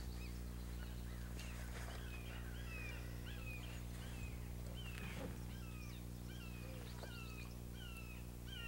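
A bird calling faintly in a quick series of short, down-slurred chirps, about two a second, beginning about a second and a half in, over a steady low electrical hum.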